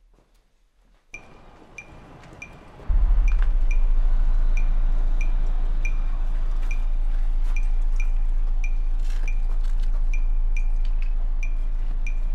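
A deep sustained bass note, the loudest sound, comes in abruptly about three seconds in and holds steady. Under it runs a regular metallic ticking, about two and a half ticks a second, which starts about a second in.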